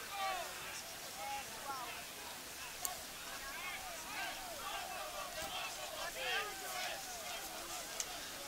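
Distant voices of football players shouting and calling to each other on the pitch, faint and scattered. There is a single sharp knock a little before three seconds in.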